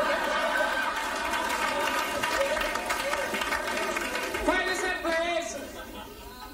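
A man's voice holding one long, steady vocal note for about four seconds, then a few short vocal sounds near the end, with audience noise underneath.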